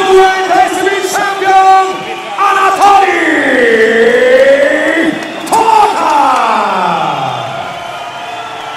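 A ring announcer's amplified voice calling out the winner's name in long, drawn-out syllables over the arena crowd. The pitch sweeps down and back up in the middle and slides down in a long fall near the end.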